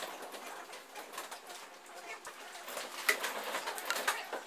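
Chalkboard duster rubbing across a blackboard, fading out early. Then a few sharp knocks and footsteps on the floor, the loudest click about three seconds in.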